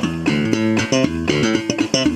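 Electric bass guitar playing a quick riff of short plucked notes, an instrumental stretch of a song.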